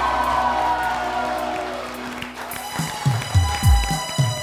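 Walk-on music over studio-audience applause and cheering: a long falling swell fades out over the first two seconds, then a heavy drum beat kicks in a little after halfway.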